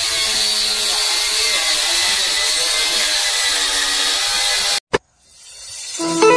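Chandelier ceiling fan running: a steady whirring hiss with a faint motor hum. It cuts off suddenly about five seconds in.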